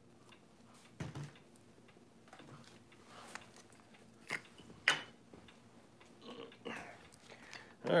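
Scattered clicks, taps and knocks of camera gear being handled on a table, with a few sharper knocks about one, four and a half and five seconds in.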